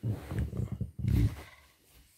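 A person snoring loudly: two deep, rattling snores, the second ending about a second and a half in.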